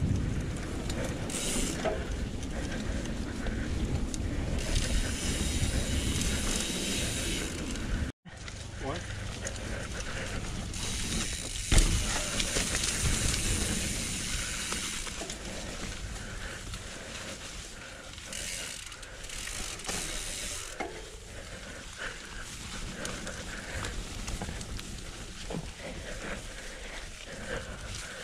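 Mountain bike ridden down a dirt trail, heard from a helmet camera: a steady rush of tyres over dirt and leaf litter, with rattling from the bike. A hard knock comes about twelve seconds in, and the sound drops out for an instant about eight seconds in.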